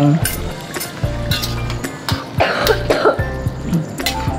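Squid pieces frying in hot, oily chilli paste in a wok, with a few sharp clinks of a metal spatula against the pan, under background music. A short rough burst comes about two and a half seconds in.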